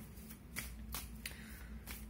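Tarot cards being handled on a table: several faint, separate card flicks and rustles.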